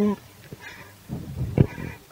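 A man's unaccompanied singing voice: a long held note ends just after the start, then a short pause with a breath and faint vocal sounds before the next phrase.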